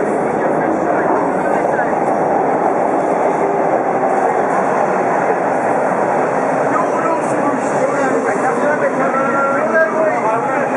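Bombardier T1 subway train entering the station and running past along the platform, a steady loud rolling noise of wheels and traction gear.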